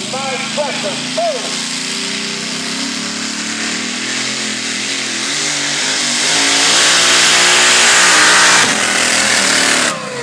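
Pulling truck's engine running hard under load as it drags the weighted sled down the track, growing steadily louder from about six seconds in and loudest near the end.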